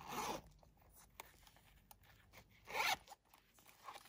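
Metal zipper on a faux-leather wallet being pulled in two short rasps, one right at the start and one near the end, with light handling clicks in between.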